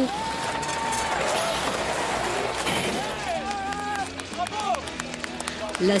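Spectators at a soapbox-cart race shouting and cheering, with a long held shout at the start, then scattered calls and some clapping.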